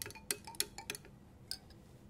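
A glass stirring rod clinking against the side of a glass beaker while stirring melted gelatin base: light clinks about three a second, then a single sharper clink about a second and a half in.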